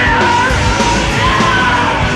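Live alternative rock band playing loud, with a high, held vocal line over the full band.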